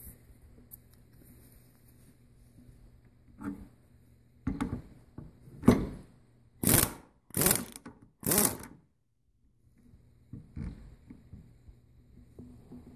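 A series of about six short bursts of mechanical noise from work at a bench vise, starting a few seconds in; the last three are the loudest and come less than a second apart.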